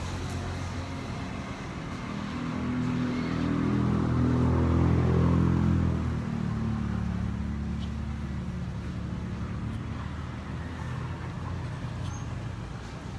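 A motor engine droning with a low, steady hum. It grows louder to a peak around five seconds in, drops off suddenly just after six seconds, then runs on more quietly.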